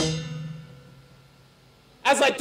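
A punk band stops on a final hit, and the last chord and cymbals ring out, fading to near quiet within about a second and a half.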